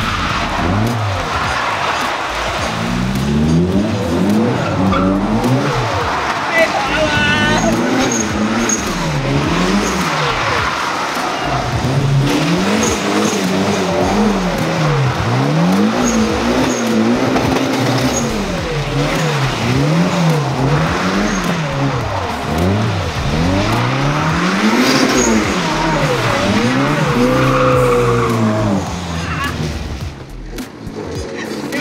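Drift car's engine revving up and down over and over, its pitch rising and falling about every one to two seconds, with tyres skidding on wet tarmac as the car slides sideways.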